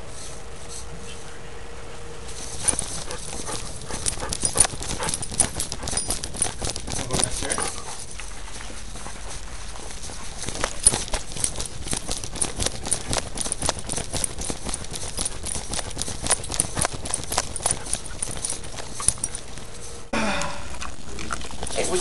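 Rapid, irregular clicking and rattling of a running dog, its claws on a hard floor, picked up by a tiny camera's microphone clipped to its collar. The clicking starts about two seconds in and stops near the end, when a voice comes in.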